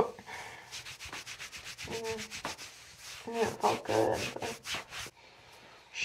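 Hands rubbing briskly over the shirt on a patient's back close to the microphone: quick scratchy strokes several times a second. A voice murmurs softly twice in the middle.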